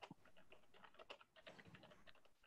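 Faint typing on a computer keyboard: an irregular run of quick key clicks, heard through a video-call microphone.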